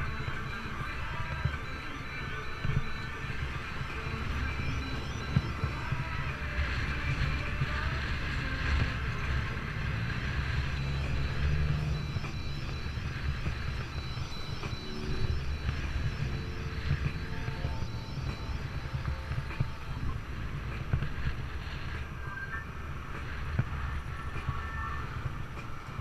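Wind rush and road rumble on a camera mounted on a moving bicycle riding alongside city traffic, a steady low roar with small knocks from bumps in the pavement.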